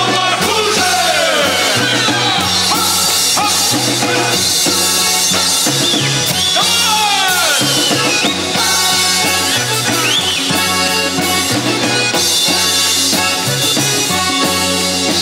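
A male vocal group sings a song at full voice, accompanied by a button accordion (garmon) and a band with a steady bass line.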